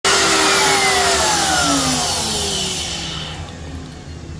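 A power-tool motor winding down after being switched off: a loud whirring with several falling tones that drops in pitch and fades over about three and a half seconds.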